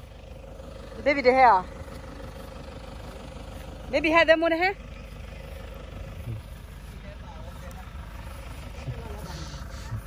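Two short bursts of talking, about a second in and about four seconds in, over a steady low rumble that runs on between them.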